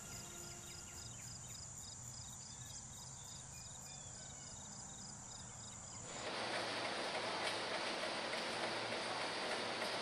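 Faint outdoor ambience: a steady high tone with faint regular chirps about three a second, then about six seconds in a louder steady hiss takes over.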